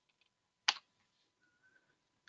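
A single sharp keystroke on a computer keyboard about two-thirds of a second in, with a couple of faint ticks just before it.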